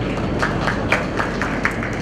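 A string of about eight sharp, irregular clicks or taps over a steady room noise, starting about half a second in.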